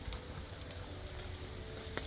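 Light rain falling: a faint, even hiss with a low rumble beneath.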